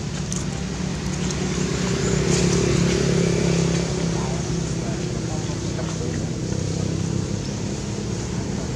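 A steady low motor hum, swelling a little in the middle and easing off after about four seconds, with indistinct voices in the background.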